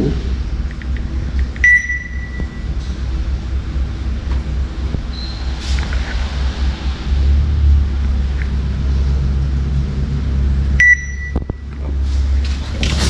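Two short electronic beeps, one about two seconds in and one near the end, over a steady low rumble.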